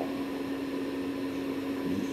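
Steady background hum and hiss: one low, even tone over a constant wash of noise, unchanging throughout.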